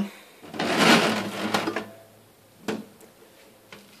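A glass jug being brought into place on a textured metal counter mat: about a second of scraping rustle, then a single sharp click a little under three seconds in.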